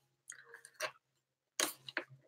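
Cardboard crackling as fingers pry open a perforated advent-calendar door: a few faint crunches, then a louder crackle near the end as the door gives.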